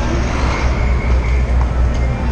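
Busy outdoor city ambience with a steady low rumble.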